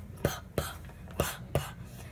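A handheld microphone being handled as its black foam windscreen is pulled off: four short knocks with faint rubbing between them.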